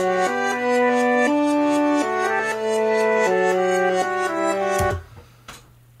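Reversed synth audio file played back: held, brass-like synth chords that change every second or so, then cut off abruptly about five seconds in.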